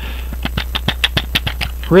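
A quick run of light, irregular plastic clicks as the clear plastic cover is taken off a watch mainspring winder set's case. The clicks start about half a second in and stop near the end.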